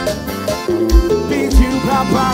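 Piseiro band music playing an instrumental passage: accordion over a deep kick-drum beat.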